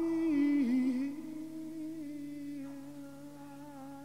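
A single voice holding a long, low sung note that wavers slightly in pitch and slowly fades.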